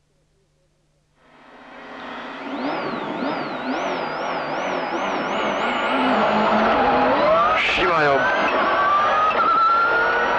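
Subaru Impreza WRC rally car's turbocharged flat-four engine heard from inside the cabin, fading in about a second in and revving hard as the car accelerates through the gears, with a short sharp crack about three quarters of the way through.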